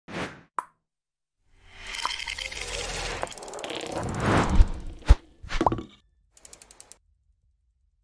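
Sound effects of an animated logo intro: a short swish and a pop, then a whoosh that swells for about three seconds into a sharp hit about five seconds in, a quick rising blip, and a short run of rapid ticks.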